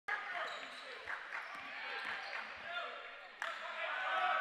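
A basketball dribbled on a hardwood gym floor, a few short bounces, over a steady murmur of crowd voices. The sound jumps louder about three and a half seconds in.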